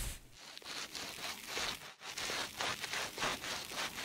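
Scalp brush scrubbing shampoo lather into hair: a run of quick, scratchy strokes that starts suddenly and keeps up without a break.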